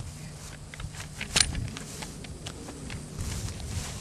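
Handling noises as men work a pole out of a caught alligator's mouth in the grass: scattered clicks and rustles, with one sharp click about a second and a half in, over a steady low hum.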